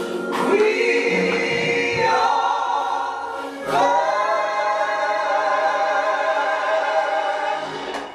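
Gospel singing by a vocal trio of two women and a man on microphones, holding long notes in harmony. A final long held chord begins about four seconds in and stops just before the end.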